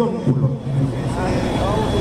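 A man's voice preaching over a stadium public-address system, his words trailing on through a short pause, over a steady low rumble.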